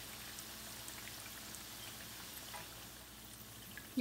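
Hot frying oil crackling faintly in a pan, with oil dripping from a mesh strainer of just-fried chicken keema pakoras held above it.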